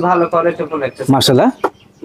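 Men talking, with no other clear sound in front of the voices.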